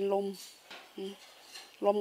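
A woman speaking Thai in short phrases, with a pause of about a second and a half in the middle in which a few faint light ticks are heard.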